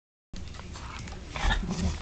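Shetland sheepdogs scuffling in a whelping box, with rustling and bumps, and a brief low dog vocalisation about a second and a half in.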